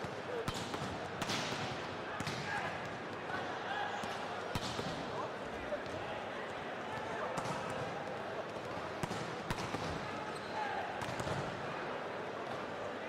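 Volleyballs being struck and hitting the floor, a series of sharp slaps at irregular intervals, over a steady background of indistinct crowd chatter.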